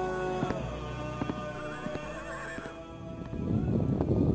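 Background music with a horse whinnying about two seconds in, a sound effect laid over the soundtrack. A louder, rougher rumble rises over the last second.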